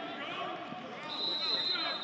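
A referee's whistle blown to end the play once the ball carrier is down, a steady shrill tone starting about halfway through and the loudest sound here. Players' voices shout on the field beneath it.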